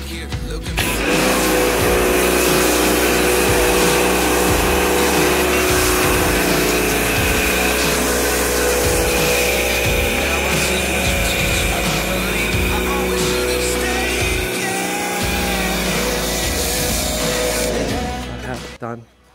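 Ryobi pressure washer running with a snow foam lance attached, spraying foam onto a car: a loud, steady motor-and-pump whine over the hiss of the spray. It starts about a second in and tails off just before the end.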